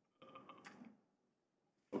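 Near silence: room tone, with one brief faint sound lasting under a second, starting about a quarter of a second in.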